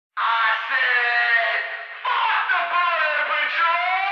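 A voice wailing in two long phrases with wavering, gliding pitch, the second phrase starting about two seconds in.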